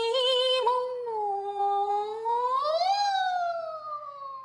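A male singer's high, clear voice singing a cappella with no accompaniment. He holds a long note that rises to a peak about three seconds in, then slides slowly down.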